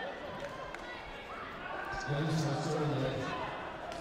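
A man speaking in a large hall over background chatter, with a couple of soft thuds in the first half.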